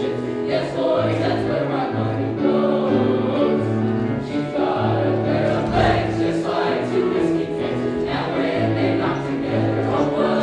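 Junior high boys' choir singing with grand piano accompaniment, the piano's low bass notes repeating steadily under the voices.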